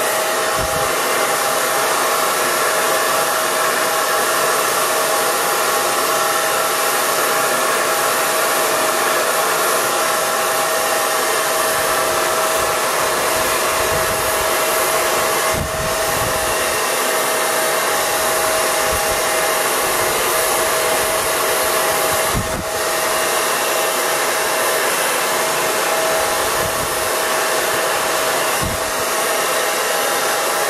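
Handheld hair dryer blowing hair dry over a round brush: a steady rush of air with a steady whine, dipping briefly a couple of times.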